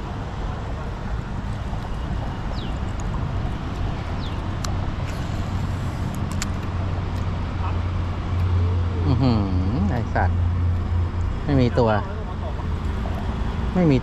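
Steady low rumble of road traffic on a highway overpass, swelling louder for a couple of seconds midway as a vehicle passes, with a few spoken words near the end.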